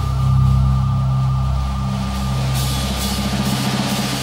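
Instrumental math-rock recording for two electric guitars and drum kit, with low notes held steady through most of the passage.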